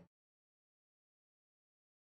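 Silence: the soundtrack has faded out to nothing.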